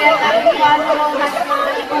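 Speech: a person talking loudly, with chatter around it.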